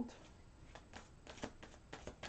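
Rider-Waite tarot deck being shuffled by hand, a faint string of soft, irregular ticks as the cards slip against each other.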